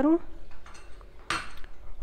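A steel spoon clinking against a small glass bowl once, briefly, past the middle.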